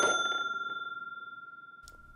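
Cash-register "ka-ching" sound effect: its bell rings out in one clear note with fainter higher overtones, fading slowly away.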